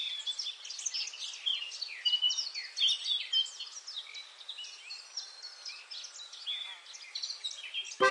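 Several small birds chirping and singing together, a dense run of short, high calls overlapping one another, with no low sound beneath them.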